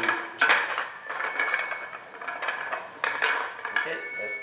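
Pool balls clacking against one another and the wooden triangle rack as they are packed and pushed together, a string of sharp clacks.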